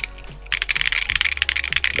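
Fast typing on a Monsgeek M1 mechanical keyboard fitted with an FR4 plate, Gazzew Boba U4T tactile switches and double-shot keycaps: a dense run of keystrokes that starts after a brief pause. There is no metal ping, because the case has been force-break modded and its side plates tightened.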